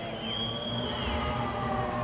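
Football stadium crowd ambience with several overlapping long, high whistles that bend down in pitch and trail off about a second in, followed by low crowd voices.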